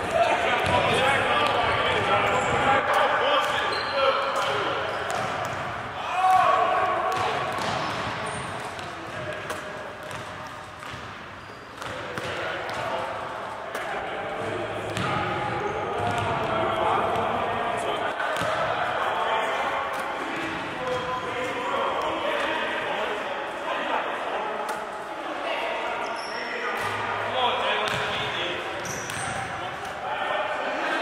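Basketballs bouncing on a hardwood gym floor and hitting the rim during repeated three-point shots, echoing in a large gym, with voices talking throughout.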